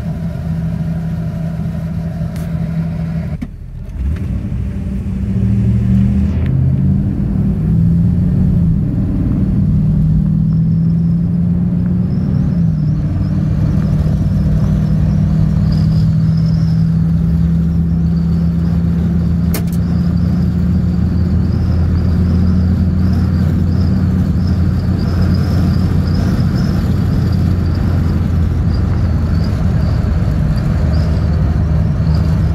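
1987 Chevrolet C20 pickup's gasoline engine heard from inside the cab, pulling away through several automatic-transmission upshifts in the first dozen seconds, then cruising steadily at about 45 mph with wind noise.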